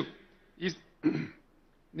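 A man clears his throat at a podium microphone: a short voiced grunt just after half a second in, then a longer raspy clearing about a second in.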